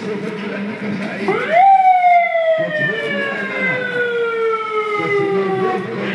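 A vehicle siren wailing: about a second in, its pitch sweeps quickly up, then falls slowly for about four seconds. Voices are heard faintly underneath.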